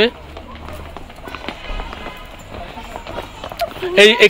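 Footsteps of several people walking down outdoor stone steps, with faint voices and a faint thread of music under them.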